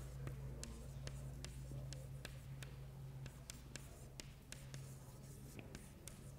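Chalk writing on a chalkboard: a run of quick chalk taps and strokes, about three a second, over a steady low hum.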